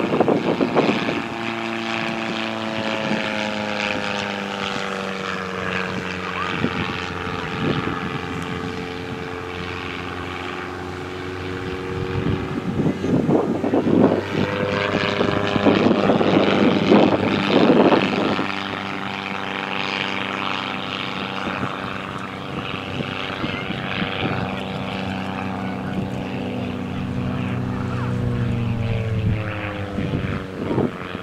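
Silence Twister aerobatic plane's propeller engine droning through its display routine. The engine note slides down in pitch a few times as the plane passes and manoeuvres, with a louder rushing stretch in the middle.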